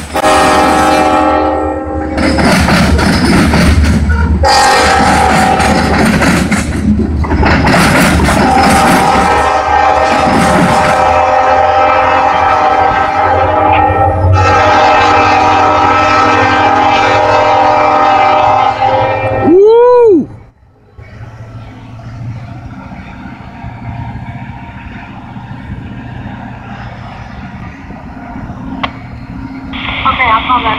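Nathan K5LLA five-chime air horn on an SD40-2 locomotive sounding a series of long, very loud blasts with short breaks. A brief swooping tone comes about 20 seconds in, followed by the lower, steady rumble of the train rolling past.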